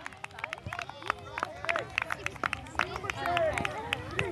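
Several distant voices of spectators and children chattering and calling over one another across an open field, with scattered sharp clicks at irregular intervals.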